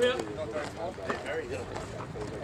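Speech only: men's voices calling out, with baseball chatter throughout.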